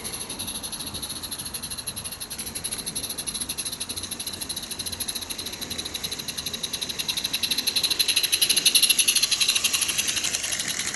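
Small garden-railway steam locomotive, a model of a George England engine, running towards and past the camera with a rapid, even beat that grows louder as it approaches, loudest near the end.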